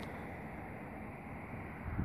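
Faint, steady outdoor background noise: an even low hum with no distinct events.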